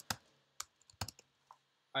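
Computer keyboard being typed on: a handful of separate keystrokes, roughly half a second apart.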